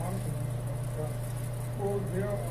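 A steady low electrical hum runs throughout. Beneath it, faint and distant, a person's voice reads aloud.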